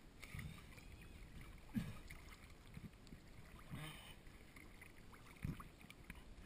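Pool water sloshing and lapping faintly against a GoPro held at the surface, heard muffled through its waterproof housing, with a handful of soft low thumps as the water knocks against the camera.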